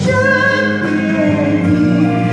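A woman singing a Chinese ballad into a microphone over a recorded backing track, holding long notes.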